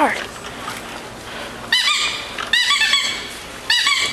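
Small child's bicycle squeaking as an adult rides and pedals it: short bursts of rapid, high-pitched squeaks about a second apart, starting a couple of seconds in.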